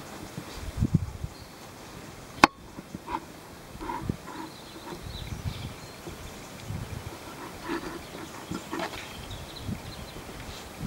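Handling noise from a polyester eight-strand plaited rope being worked with a wooden-handled splicing tool on a tabletop: scattered soft rubs and low thumps. One sharp click about two and a half seconds in is the loudest sound.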